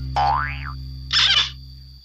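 Cartoon 'boing' sound effect, a quick rising-then-falling glide, followed about a second in by a short hissing swish, over a steady background music bed that fades out near the end.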